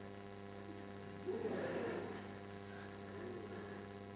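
Steady electrical mains hum in the sound system, with a brief faint murmur about a second in.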